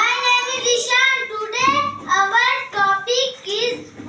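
Young children singing a rhythmic chant, syllable after syllable, many of them sliding upward in pitch.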